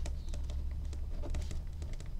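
A pen writing on graph paper: a quick, irregular run of small taps and scratches as the words are written, over a low steady hum.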